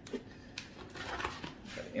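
Pliers used in place of scissors to cut and pull at small packaging, giving a quick run of small clicks and scrapes with crinkling packaging.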